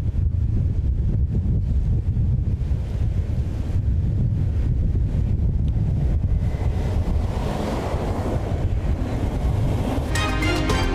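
Wind buffeting the microphone at the seashore: a steady low rumble, with a broader rushing hiss that swells for the last few seconds.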